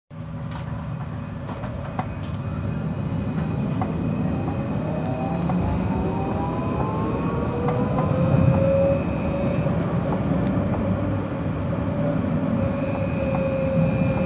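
Light-rail tram pulling away from a stop and gathering speed, heard from inside the car: the traction motors give a whine that rises in pitch over several seconds, over the steady low rumble of wheels on rail.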